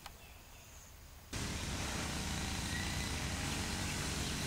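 Faint outdoor ambience with a brief high chirp, then just over a second in an abrupt jump to a louder steady outdoor noise, heaviest in the low end, that carries on.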